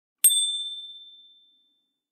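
A single bright bell-like "ding" sound effect, struck once about a quarter second in. It rings out on one clear high tone and fades away over about a second and a half.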